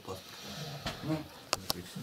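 A pause in a man's talk: faint low voice sounds, like a murmur or hum, then two sharp clicks in quick succession about a second and a half in.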